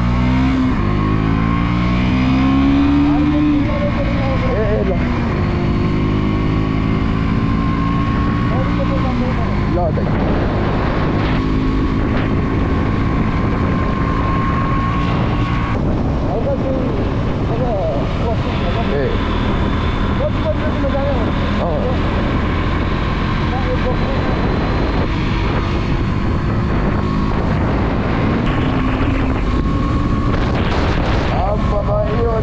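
A motor vehicle's engine picks up speed over the first few seconds, rising in pitch, then runs steadily under way. Voices are heard over it now and then.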